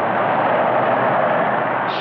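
A car driving: a broad rush of engine and road noise that builds over the first second and eases slightly near the end.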